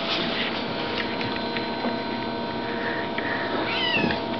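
Bengal kitten at play: soft taps and rustling on a blanket, then a short, high, bending chirp near the end.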